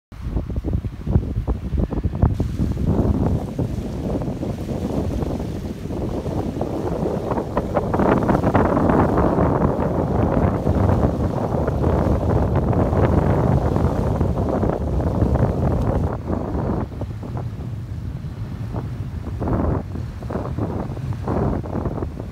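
Wind buffeting the microphone in gusts, over small estuary waves lapping on a sandy shore. It is loudest in the middle stretch.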